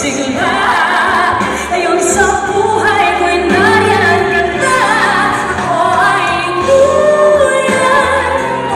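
A woman singing a pop song live into a handheld microphone, with vibrato on the held notes, over backing music with a steady bass line.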